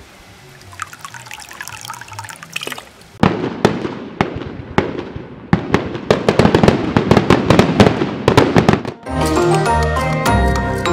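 Fireworks going off in quick succession, a dense run of sharp bangs and crackles starting about three seconds in. About nine seconds in they give way to music with a steady beat.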